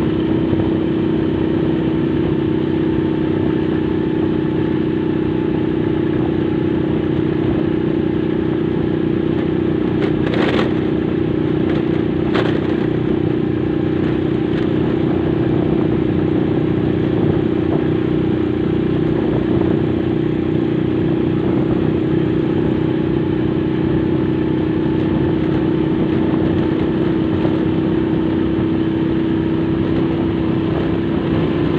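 Motorcycle engine running at a steady cruise, a constant hum with no change in pitch. Two brief clicks or knocks come through about ten and twelve seconds in.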